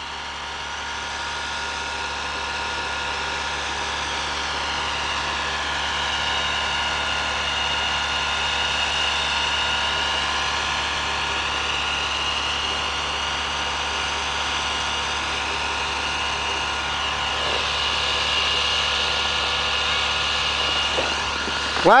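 A vehicle's engine idling steadily, heard from inside the cab, with a thin high whine above the hum.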